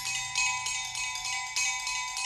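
Percussion ensemble playing an even run of quick metallic strokes, with bright, bell-like ringing tones sustained underneath.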